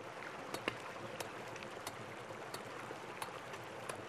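Sharp taps of a hammer striking rock, about one every two-thirds of a second, over a steady rushing noise like running water.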